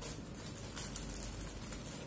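Faint rustling of a plastic bread bag and its cloth cover being handled, in light irregular scrapes.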